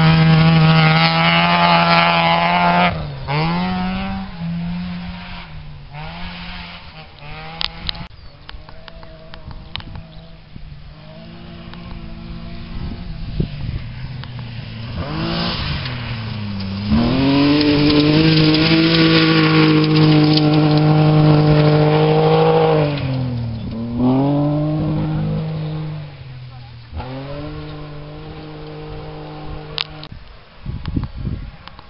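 Rally cars at full throttle on a gravel stage. The first car's engine runs at high revs, dips with a gear change about three seconds in, and fades as it drives off. A second car comes in loud from about fifteen seconds, holds high revs with a few drops in pitch at gear changes, and fades near the end.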